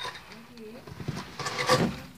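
Quiet, indistinct human voices: a short low murmur, then a louder, breathy utterance about a second and a half in.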